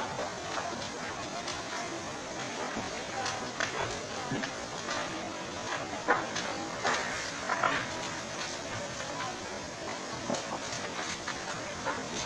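Wooden houses burning in a large fire: a steady rushing noise with frequent sharp cracks and pops, and voices shouting faintly in the background.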